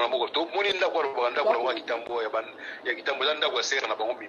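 Speech only: a person talking continuously, with no other sound standing out.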